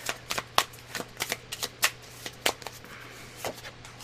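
A deck of oracle cards being shuffled by hand: a dozen or so short card snaps and flicks at an irregular pace.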